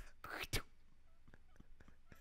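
Breathy, whispery laughter, two short exhaled bursts in the first half-second, then faint soft ticks over near quiet.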